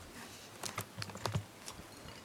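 Quiet acoustic noise improvisation: a quick run of about nine small, sharp clicks and taps, bunched from about half a second in to near the end, over a faint hiss. No pitched piano notes sound.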